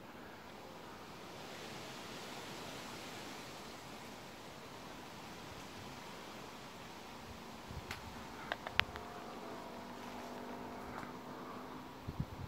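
A steady hiss of outdoor wind, swelling slightly over the first few seconds. A few sharp clicks come about two-thirds of the way through, and a faint low hum sits under the last few seconds.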